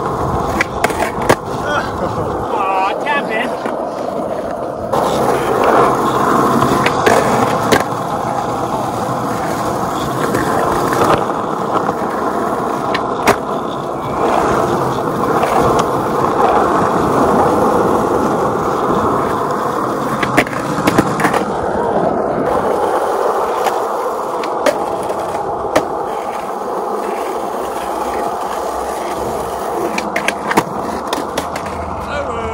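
Skateboard wheels rolling on a concrete path in a continuous rumble, with sharp clacks scattered throughout as the board's tail pops and the board lands and hits the concrete ledges.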